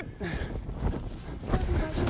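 Rustling and handling noise on a body-worn microphone as the wearer moves about on the practice field, with faint voices in the background.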